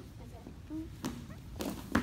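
Wrestlers taken down onto a padded wrestling mat: a few short knocks and scuffs, then a heavy thud near the end as the bodies land.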